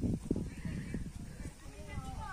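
Footsteps on a dirt and gravel path: an irregular run of short, low thuds, as of several people walking.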